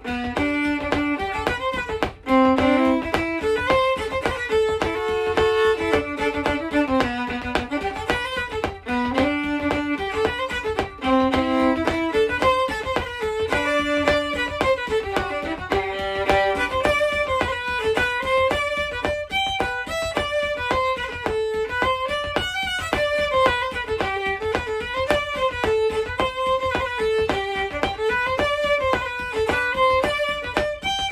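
Solo fiddle playing a lively, crooked Franco-American fiddle tune, a steady stream of quick bowed notes. The first dozen seconds sit in a lower strain, then the tune moves up into a higher strain.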